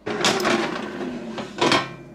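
Cosori air fryer's basket being pulled out of the unit, a plastic sliding scrape lasting about a second, with a louder short scrape or knock near the end.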